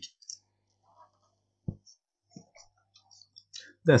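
A few faint, isolated clicks with long quiet gaps between them, the sharpest just before two seconds in, over a faint low hum.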